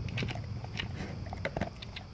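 English cream golden retriever chomping and chewing dry kibble from a plastic slow feeder bowl, in irregular crunches.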